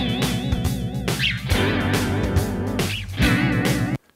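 Music playing through the Tukan Studios Modulation 2 chorus effect (a JS plugin for REAPER), with a steady wavering shimmer. After the plugin's update it is clean, without the clicks or grainy glitches. Playback cuts off suddenly at the end.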